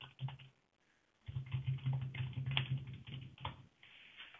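Typing on a computer keyboard: a few keystrokes, a short pause, then a quick run of typing from about a second in.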